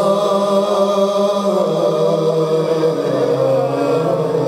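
Unaccompanied male voice chanting a Shia mourning lament (naʿi) in long, drawn-out held notes, the pitch shifting only slightly between them.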